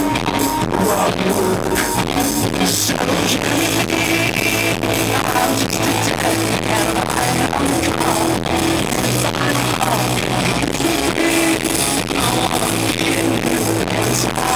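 Live rock band playing loud through a PA: electric guitars, bass and a steady drum beat. The recording is overloaded from being right in front of the speakers.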